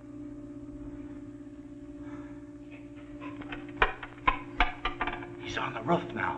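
A steady low drone holds throughout. In the second half comes a quick run of sharp knocks, four about a third of a second apart, then a few more near the end.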